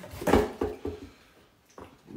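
Empty cardboard snack-subscription box handled and swung about, its lid flapping: a few soft knocks in the first second and a single click near the end.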